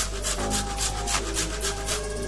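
Dried lemon (loomi) being grated on a stainless steel box grater: quick, repeated rasping strokes, several a second.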